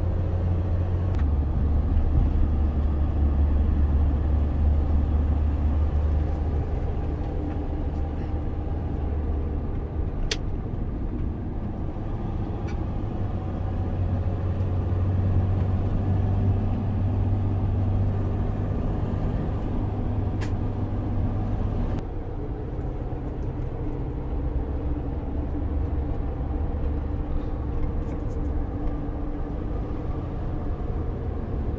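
Steady low road and engine rumble heard inside a moving car's cabin, with two brief ticks about ten seconds apart.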